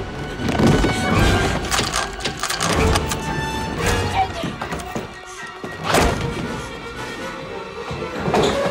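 Horror-film fight soundtrack: tense orchestral score under the thuds and crashes of a struggle, with several sharp hits, the strongest about six seconds in.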